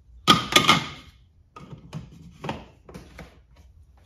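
Engine oil filler cap on a Porsche GT4 being screwed down and clicking as it seats, a quick cluster of sharp clicks about a third of a second in, followed by a few lighter scattered knocks as the cap area is handled.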